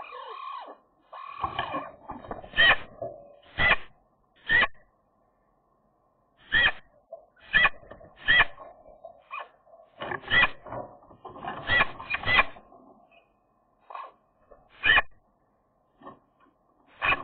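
Eurasian magpie calling close by: a series of short, separate call notes at irregular intervals, mixed with softer warbling sounds, with a pause of about two seconds after the first few seconds. It is a call the female uses often when her mate is around.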